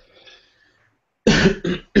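A man coughs, a short double cough a little over a second in, after a brief quiet pause.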